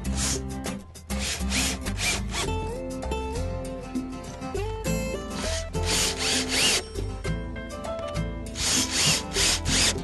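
Cordless drill driving wood screws into cedar boards in several short bursts of a few seconds each, over background music.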